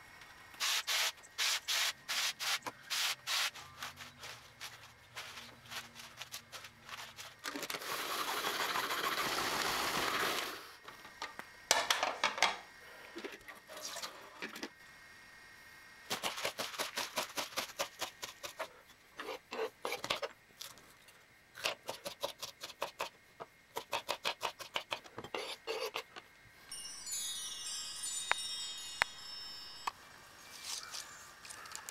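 Kitchen knife chopping lettuce on a plastic cutting board, in several runs of quick, rhythmic strokes. About eight seconds in there are a few seconds of steady hiss, and near the end a short run of high chirps.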